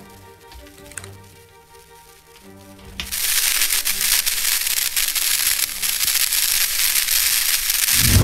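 Music with long held notes, then, about three seconds in, a loud electric crackling and zapping sound effect, like lightning arcing, that runs on dense with sharp cracks.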